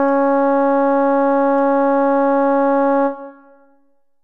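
Synthesizer playing the alto line of an a cappella mixed-choir piece as a part-learning guide: one long held note, the final hummed 'M', that stops about three seconds in and quickly dies away.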